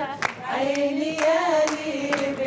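Singing of a folk-style melody with hands clapping along in time, about two claps a second.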